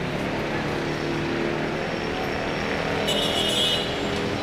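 Busy street noise with motor vehicle engines running close by. About three seconds in, a brief high-pitched sound cuts through for under a second.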